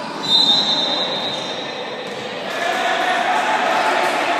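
Referee's whistle blown once, a short shrill steady blast about a quarter second in, stopping play, over the echoing din of a basketball game in a sports hall. Voices in the hall grow louder about two and a half seconds in.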